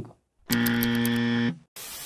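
A harsh, steady electronic buzzer sounds for about a second, the game-show style error buzz that marks a wrong answer. It is followed near the end by a short burst of TV static hiss.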